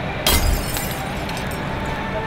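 A thin blown-glass bubble on a blowpipe shattering: one sharp crack with a low thud about a quarter second in, followed by scattered tinkling of falling shards, over a steady background rumble.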